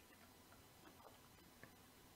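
Near silence: faint room tone with a few tiny ticks.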